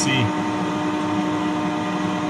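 Steady machinery hum inside a small submarine's cabin, with one constant mid-pitched tone over an even noise.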